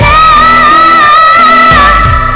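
A woman singing live into a handheld microphone, holding one long note with vibrato that falls away near the end, over a pop-style instrumental backing track.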